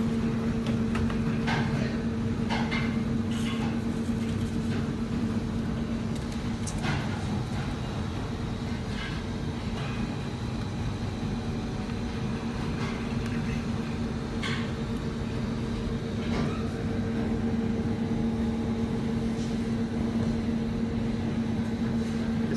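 Steady low hum of kitchen machinery, with a constant low tone, and a few faint light clicks and knocks scattered through it.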